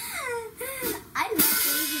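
A young girl's high, wavering vocal sounds without clear words, joined about one and a half seconds in by a sudden bright hiss-like burst of noise.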